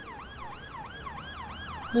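Emergency-vehicle siren in a fast up-and-down yelp, about three sweeps a second.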